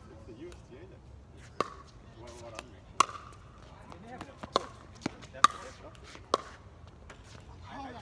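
Pickleball rally: sharp pops as paddles strike the plastic ball back and forth, about six hard hits, with the loudest about three seconds in and again about five and a half seconds in.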